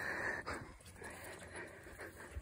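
Hushed, breathy whispering, loudest in the first half-second and then faint.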